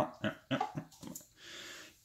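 A man's short wordless vocal sounds: a few quick grunts or mutters in the first second, then a soft hiss near the end.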